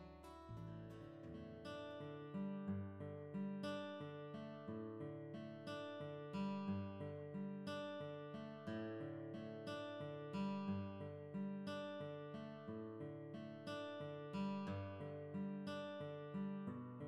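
Quiet instrumental background music of plucked acoustic guitar: a steady, even stream of picked notes.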